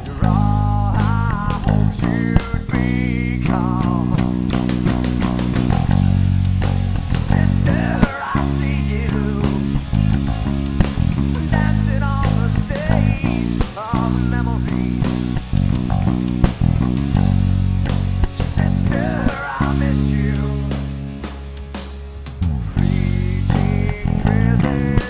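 Rock band recording in an instrumental section with drums and a wavering lead line that bends and shakes, with an electric bass, a Fender Jazz Bass, playing steady, driving notes along with it. The band drops quieter for a couple of seconds about twenty seconds in.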